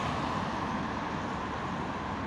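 Steady road and traffic noise from city traffic heard from inside a moving vehicle, a low even rumble with no distinct event.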